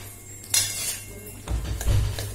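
Metal spatula stirring and scraping potato and pea filling in a metal kadai: a scrape about half a second in, then heavier knocks and scrapes against the pan near the end.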